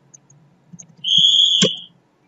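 A few light keyboard keystrokes, then a loud, high-pitched steady beep lasting just under a second, with a sharp click partway through it.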